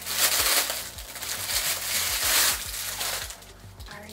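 Thin clear plastic bag crinkling as a cloth apron is pulled out of it, dying down about three seconds in.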